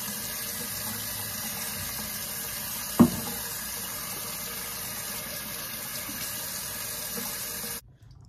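Kitchen faucet running in a steady stream into a stainless steel sink, with one sharp knock about three seconds in. The water sound cuts off abruptly near the end.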